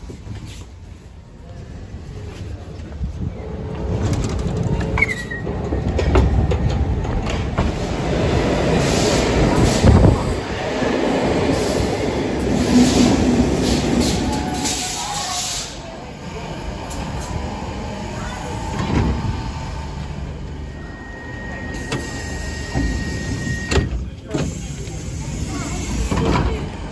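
Stockholm metro train on the blue line running through the station. Its noise builds over the first few seconds and is loudest with a high hiss in the middle, then eases to a lower, steady rumble.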